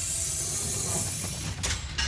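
A loud, steady hissing, rustling noise that stops about one and a half seconds in, followed by a sharp click near the end.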